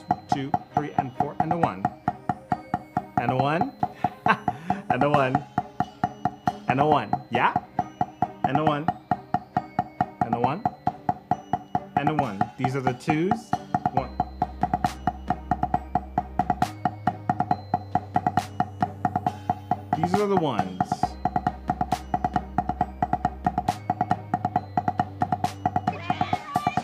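Wooden drumsticks striking a rubber practice pad in a continuous run of stroke exercises. They play over a backing track that holds a steady drone, with bass notes changing a few times.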